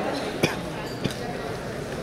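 Two short knocks about half a second apart over low voices and room noise in a large hall.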